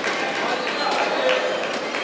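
Indistinct murmur of voices over the steady ambience of a large indoor sports hall.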